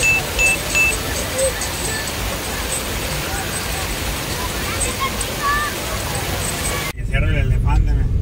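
Water rushing over a low concrete spillway, a steady loud wash, mixed with the shouts and chatter of a crowd of bathers, with three short high beeps near the start. About seven seconds in it cuts to the low rumble of a car's engine and road noise inside the cabin, with a voice.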